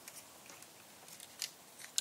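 Faint handling of cardstock embellishment pieces: soft paper rustles and a few light ticks as the strips are picked up and moved.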